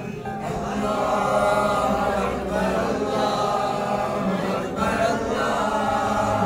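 Voices singing a devotional chant in long held phrases, with short breaks between phrases.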